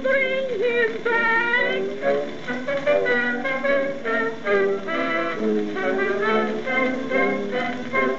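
A song from an old phonograph cylinder record, played back electrically through a Stanton 500 cartridge and amplifier and heard from the machine's built-in loudspeaker. Continuous pitched notes with vibrato.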